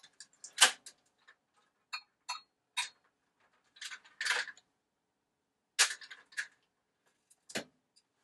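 Tongveo PTZ camera's pan and tilt mechanism moving the head through its power-up self-calibration. It sounds as a string of short clicks and brief mechanical bursts, the loudest about half a second in and again near six seconds.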